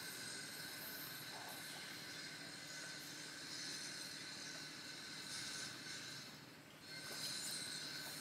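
Steady outdoor background of insects buzzing at a high pitch, dropping briefly about two-thirds of the way through and then resuming.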